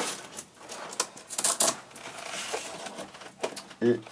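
Velcro straps being pulled open with a scratchy tearing noise, mixed with light clicks and knocks as an airsoft rifle replica is freed and lifted out of its case.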